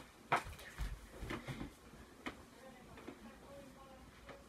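Knocks and thuds of a person moving about and stepping up onto a bed: a sharp knock about a third of a second in, low thuds and small clicks over the following second, and another click a little past two seconds.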